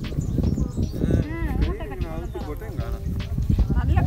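People talking in voices, over a steady low rumbling noise.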